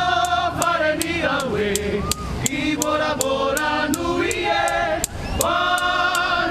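Tahitian performers singing or chanting together in held, sliding notes, over a steady sharp percussion beat of about three to four knocks a second. The voices break off briefly near the end, then come back in on a new held chord.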